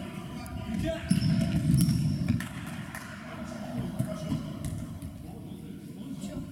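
Futsal ball being kicked and bouncing on a hard sports-hall floor, a few sharp knocks, with indistinct players' shouts ringing in the large hall.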